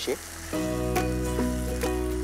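Food sizzling in an earthenware pot as it is stirred. About half a second in, background music with steady sustained notes and a bass line comes in and becomes the loudest sound.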